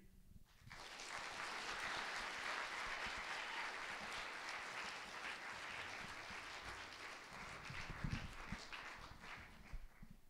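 Audience applauding. It starts about a second in and fades out near the end.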